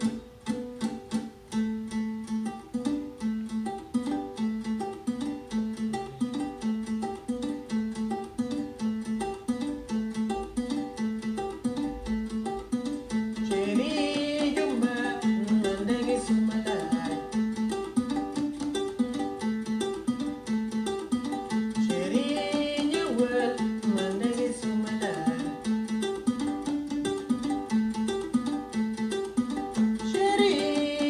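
Akonting, the West African folk lute that is an ancestor of the banjo, played in the clawhammer style as a steady repeating pattern of plucked notes. About halfway through, a voice starts singing over it in short phrases.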